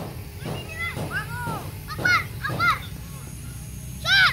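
Children shouting and calling out to each other while playing football, a string of short high-pitched calls over a steady low rumble.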